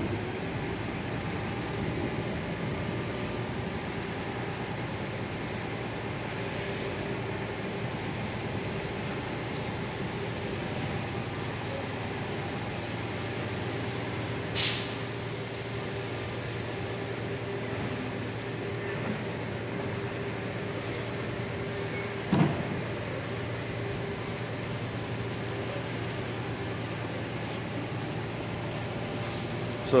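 A steady low engine hum, like a heavy vehicle idling, with a sharp click about fifteen seconds in and a short knock about twenty-two seconds in.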